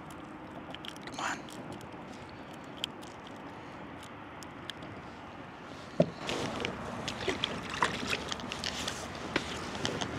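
Faint steady outdoor hiss with a few light clicks as a small bass is unhooked by hand, then about six seconds in a sharp splash as the bass is dropped back into the river, followed by a few seconds of clicks and knocks from water and handling on the kayak.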